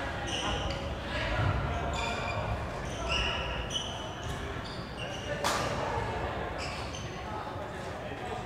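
Court shoes squeaking on a wooden badminton floor in a large echoing hall, with a sharp smack of a racket hitting a shuttlecock about five and a half seconds in. Voices talk in the background.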